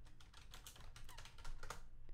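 Typing on a computer keyboard: a quick run of faint keystrokes, with a couple of louder key presses about one and a half seconds in.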